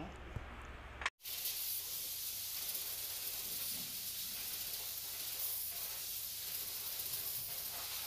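A steady hiss that starts abruptly after a brief dropout about a second in and holds at an even level.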